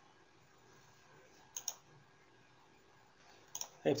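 Computer mouse clicking: a quick double click about a second and a half in and a couple more clicks near the end, over a quiet room.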